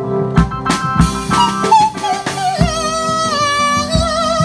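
Live band music: a drum kit beating time under a keyboard lead line that climbs through a few quick notes, then holds one long note with vibrato through the second half.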